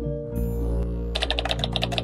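Background music with sustained chords; about a second in, a rapid run of keyboard-typing clicks starts, about ten a second, a typing sound effect for the caption appearing on screen.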